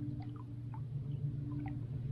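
A steady low hum with faint small water drips and laps against the boat scattered through it.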